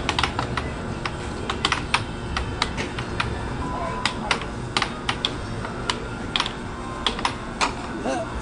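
Irregular sharp clicks and taps, one to three a second, over a steady low background rumble.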